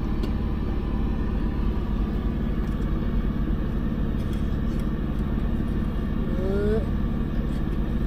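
Diesel engine idling with a steady low rumble, heard from inside a semi-truck's sleeper cab.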